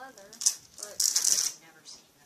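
A white sneaker handled and its laces worked: a sharp click about half a second in, then a brief rattling rustle lasting about half a second.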